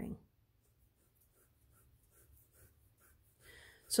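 Graphite pencil sketching on paper: faint, short scratchy strokes repeating about three times a second as lines of an ellipse and its sides are drawn.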